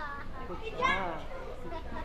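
Children's voices in a jiu-jitsu gym, with one loud, high-pitched child's shout that rises and falls about a second in.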